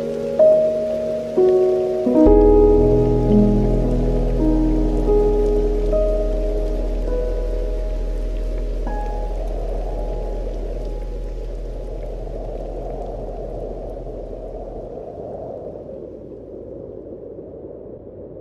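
Slow, calm instrumental music ends on a long held low chord that fades away. Under it runs a steady rain sound, which comes to the fore as the music dies out and then fades too.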